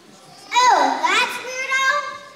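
A young girl's voice through the hall's microphone and speakers, speaking a line with a wide, sweeping fall and rise in pitch that starts about half a second in.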